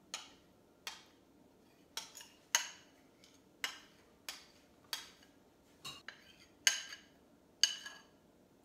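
A metal spoon clinking and scraping against a ceramic mixing bowl as cake batter is scraped out of it: about a dozen sharp clinks, each ringing briefly, at uneven intervals.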